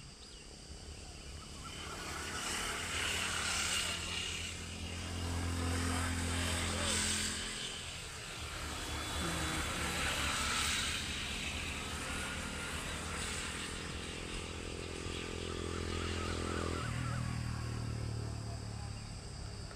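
Road traffic: vehicles pass by one after another, the sound swelling and fading about three times. Under it runs a steady low engine hum.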